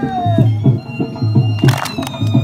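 Saraiki folk music for jhumar dancing: a drum beating about three strokes a second under a high, wavering melody line. A sharp burst comes near the end.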